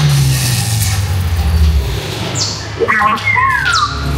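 Sci-fi dark ride soundtrack: a low rumble under music, then near the end a burst of electronic effects, one falling high sweep followed by quick rising and falling whistling tones.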